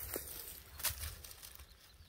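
Faint rustling with a couple of short crackles in dry grass and fallen leaves, the clearest just under a second in.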